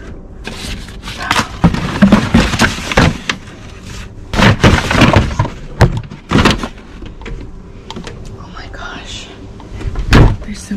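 Cardboard boxes, paper bags and books being rummaged through and shifted around inside a plastic recycling bin: paper and card rustling, with a string of knocks and thuds.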